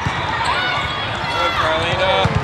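Indoor volleyball rally: sneakers squeaking on the court, a thud as the ball is dug, and players and spectators calling out.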